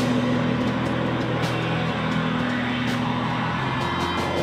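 Rock band playing live and loud: distorted electric guitars hold a sustained droning chord over the drums, with a couple of sharp drum or cymbal hits, and the held pitch shifts shortly before the end.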